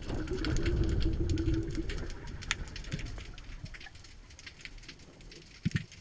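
Underwater sound picked up by a camera in its housing: a low rumble with a steady hum for about the first two seconds, then fainter, with scattered sharp clicks and crackles throughout and a couple of low knocks near the end.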